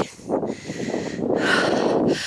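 Wind buffeting and rustling on a handheld camera's microphone, rising and falling unevenly in strength.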